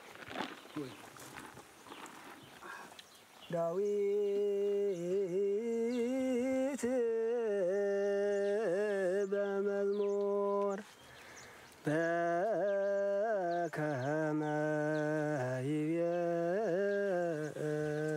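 A lone voice, unaccompanied, holds long, slow melodic notes with wavering ornaments. It starts about three and a half seconds in after faint outdoor ambience, breaks off briefly around eleven seconds and picks up again in a second phrase.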